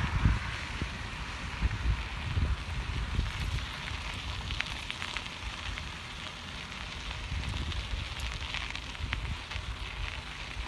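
Bicycle tyres rolling over a gravel trail, a steady crackling hiss with a few sharp ticks of grit, while wind buffets the phone's microphone in gusts.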